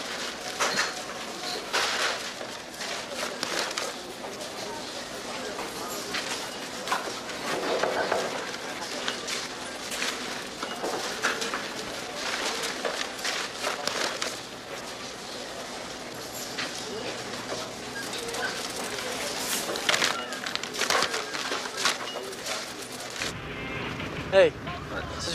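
Indistinct background crowd chatter with many scattered sharp clicks and knocks.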